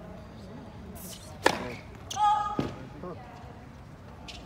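Tennis serve: the racket strikes the ball with a sharp crack about one and a half seconds in, followed by a short, high shouted call and a second, softer thud of the ball.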